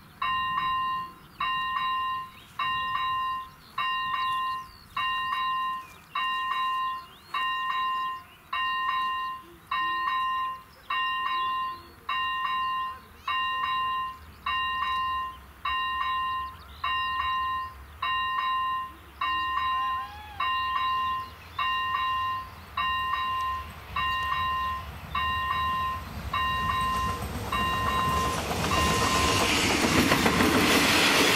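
Electronic warning bell of an AŽD 97 level-crossing signal ringing, a sharp ding about once a second. In the last few seconds the rumble of an approaching train grows as it reaches the crossing.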